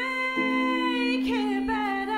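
A woman singing a long held note for just over a second, then a shorter wavering note, over a steady sustained low note in the accompaniment.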